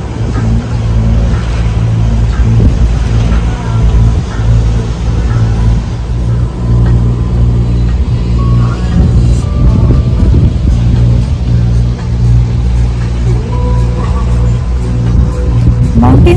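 Catamaran's engine running steadily under way, a low even drone.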